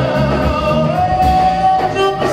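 A live band playing with a male singer on microphone, electric guitar, drums and keyboards, a long held note sounding about halfway through.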